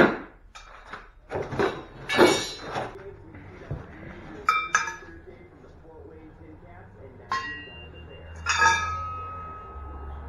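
Metal parts of a garage door opener being handled and knocked together: a series of knocks, then three separate metallic clinks, each ringing briefly, the last one ringing longest.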